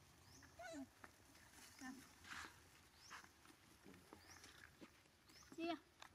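Faint scattered squeaks and short calls of macaques, with one louder call near the end.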